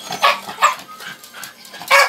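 A dog barking: a few short, sharp barks in quick succession.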